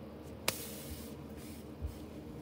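A sharp click, then a brief papery swish as a handful of paper cutouts is swept up off a carpet by hand. A soft low thump comes near the end.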